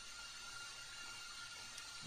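Faint steady hiss of room tone and microphone noise, with a thin steady tone running through it.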